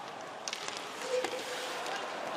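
Ice hockey rink sound during play: skates scraping and carving the ice and a few sharp clicks of sticks on the puck, over a steady crowd murmur.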